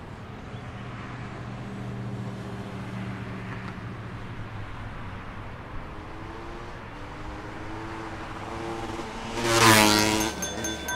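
A motor vehicle's low steady hum over a haze of traffic-like noise, its pitch rising in the second half, then a loud swelling whoosh just before the end, as of a vehicle passing close.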